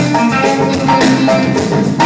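Live band playing an upbeat Wassoulou groove: drum kit and hand percussion keeping a steady beat under electric guitar and bass.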